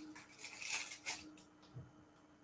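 Faint rustling and crinkling of a plastic icing piping bag being picked up and handled, with a soft low thud near the end.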